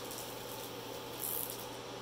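Hand rubbing over the clear plastic film that covers a diamond painting canvas, with a soft, brief rustle a little over a second in, over a low steady hum.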